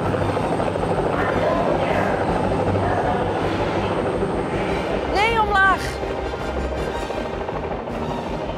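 Helicopter rotor and engine noise, the steady sound of a helicopter coming in to land, played back in a landing simulator. About five seconds in, a short rising-and-falling vocal call cuts through it.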